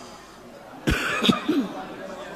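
A person coughing about a second in: two short coughs, followed by a brief vocal sound.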